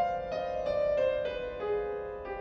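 Concert grand piano played solo: a slow melodic line of single struck notes, about three a second, that steps down to a lower note near the end, each note ringing on under the next.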